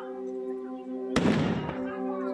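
A single black-powder gunshot about a second in: a sharp report with a short rumbling tail, over a steady background of sustained musical tones.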